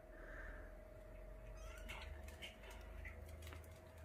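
Faint, high mews from a young kitten, a couple of short calls over a quiet room with a low steady hum.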